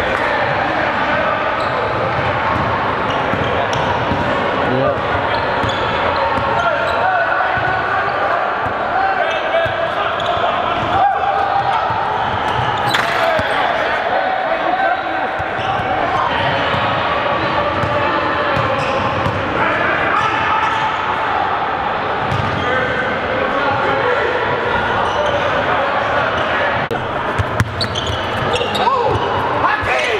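Basketballs bouncing on a hardwood gym floor during a full-court scrimmage, with indistinct players' voices and calls in a large gym.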